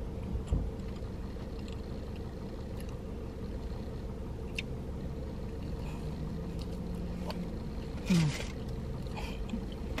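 Steady low rumble inside a parked car's cabin, with a soft thump early on. Near the end come soft hums of enjoyment from someone eating a doughnut, the loudest a short falling "mmm".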